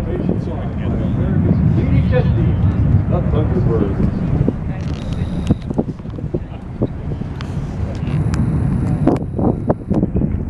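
Steady low rumble of the Thunderbirds' F-16 jet formation at a distance, mixed with wind on the microphone and faint crowd voices.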